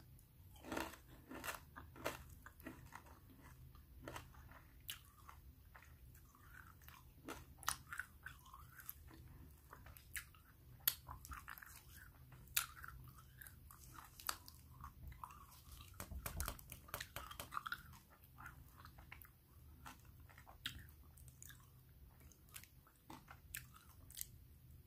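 Close-miked chewing of a bite of frozen red bean and taro ice cream bar with the side teeth: scattered soft crunches and wet mouth clicks, busiest about two-thirds of the way through.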